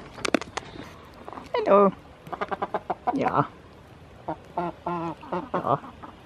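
Short calls from farm animals over close clicking and handling noises: a wavering call about a second and a half in, another just after three seconds, and several short calls in the second half.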